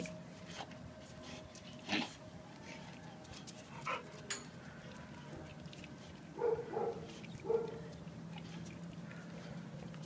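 A dog barks faintly a few times, in short yaps, about six and a half to seven and a half seconds in, over a steady low hum, with a couple of sharp knocks earlier.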